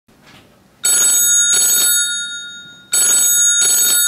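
A phone ringing with a bell-style ring: two rings, each a quick pair of bell-like bursts that ring on briefly.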